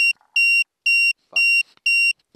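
A camera's electronic beeper giving a run of short, high, identical beeps, about two a second, as the camera is switched off to end the recording.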